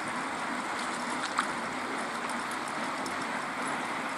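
Steady rush of lake run-off water pouring out through a stone culvert, with one short click about a third of the way in.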